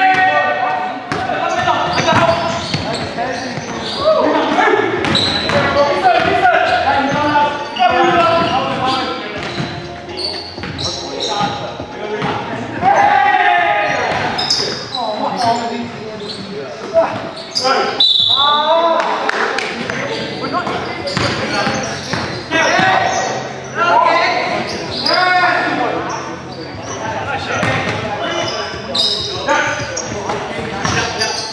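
Basketball game in a gym: the ball bouncing sharply and often on the hardwood floor, mixed with players' voices and calls, all echoing in the large hall.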